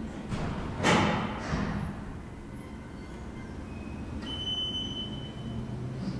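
Footsteps on the floor of a KONE hydraulic elevator car, with a heavy thud about a second in as a person steps aboard. After that comes a steady low hum, with a thin high tone for about a second past the middle.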